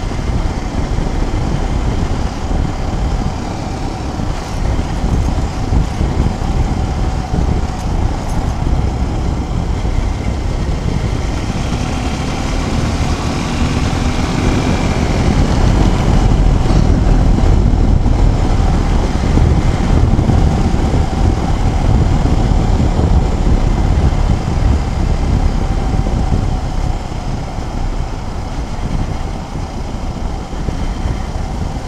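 Suzuki Gixxer SF 250 single-cylinder motorcycle riding along a road, its engine running under a heavy rush of wind over the helmet-mounted microphone. It gets louder for several seconds around the middle.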